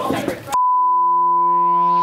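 A steady high-pitched test-tone beep, the reference tone that goes with TV colour bars, cuts in sharply about half a second in over a lower hum.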